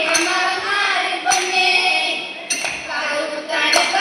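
A group of girls singing a Malayalam folk song (naadan paattu) together, keeping time with four sharp hand claps about a second and a quarter apart.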